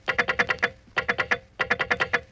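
A tobacco auctioneer's chant: rapid-fire syllables rattled off on one steady pitch, about ten a second, in three quick runs with short breaks between them.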